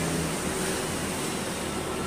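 Steady background hiss with no distinct sound in it.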